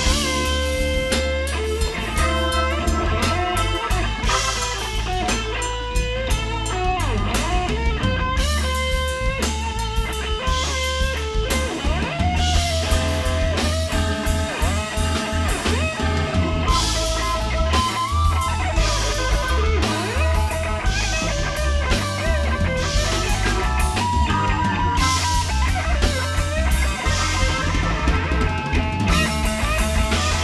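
Live blues band playing an instrumental stretch: an electric guitar solo with bent, sliding notes over electric bass and drum kit.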